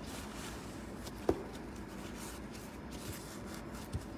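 Quiet room tone broken by a single sharp click or tap about a second in, with a fainter tick near the end.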